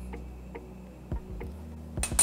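A few faint light ticks from garlic powder being tapped off a spoon into a ceramic mixing bowl, over a low steady hum.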